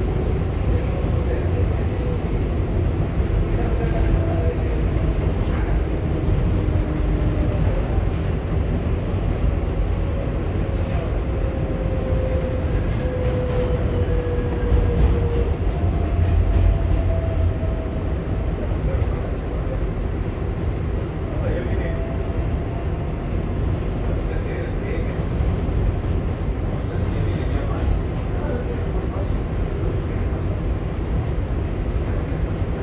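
R188 subway car running on the elevated 7 line, heard from inside the car: a steady rumble of wheels on rail, with faint whines that slide slowly in pitch. It grows a little louder around the middle as another train runs alongside.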